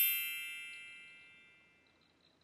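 A bright chime sound effect: a quick rising shimmer into several ringing high tones that fade away over about a second and a half.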